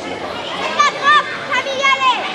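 Children's high-pitched voices calling out: a quick run of short shouts, each rising and falling in pitch, starting about a second in, over the babble of a sports hall.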